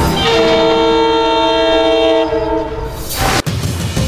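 Train horn sounding a steady chord of several notes, held for about two and a half seconds before it dies away. A short rushing noise follows near the end.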